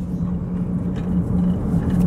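Car driving at steady speed, heard from inside the cabin: a steady low engine hum over tyre and road rumble.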